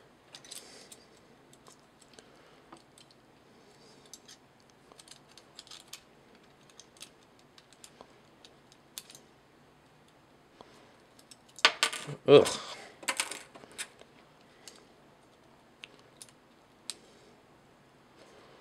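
Faint, scattered clicks and taps of hard plastic parts on a transforming robot toy figure as its tabs are worked into their slots. About twelve seconds in comes a cluster of louder clicks and a grunt.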